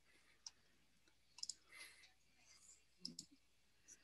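Near silence broken by a few faint, scattered computer mouse clicks while a slide deck is paged through.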